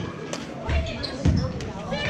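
A basketball bouncing on a gym floor: two low thumps about half a second apart, near the middle, as it is dribbled up the court. Spectators' voices and sharp squeaks or clicks carry through the reverberant hall.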